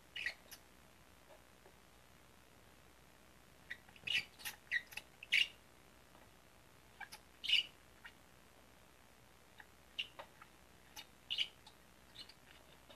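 Rubber-tipped spray paint brush dabbing white paint onto a foam board, heard as soft, very brief high-pitched scratches in small clusters, the busiest stretch about four to five and a half seconds in.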